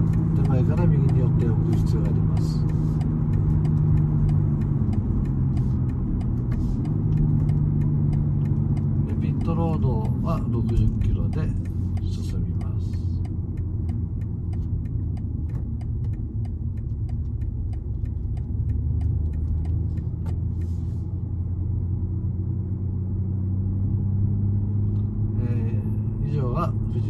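Car engine and road noise heard from inside the cabin. The engine note steps down and back up a few times in the first ten seconds, then settles lower and steadier as the car slows to the pit-lane limit, with many light ticks over it.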